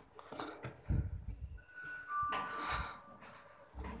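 A two-tone electronic chime, a higher note followed by a lower one that overlap briefly, about a second and a half in, after a low thump and over rustling handling noise.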